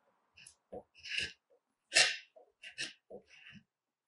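A hand scraper pulled in short strokes down a wooden post, scraping heat-softened paint off the wood: a run of brief scratchy scrapes, the loudest about two seconds in.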